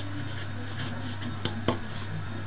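Fountain pen nib scratching faintly across paper as a cursive word is written, with two light ticks near the end.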